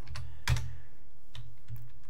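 A handful of sparse keystrokes on a computer keyboard, the sharpest about half a second in, over a faint steady low hum.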